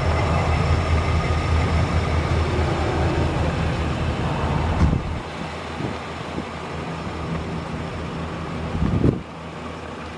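A 1994 Chevrolet Impala SS's 5.7-litre LT1 V8 idling steadily, heard close at first. It gets quieter in two steps, about halfway through and again near the end, as the microphone moves back from the car. There is a brief thump at each step.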